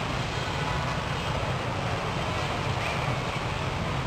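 Steady outdoor background noise with a constant low rumble and an even hiss, with no distinct events.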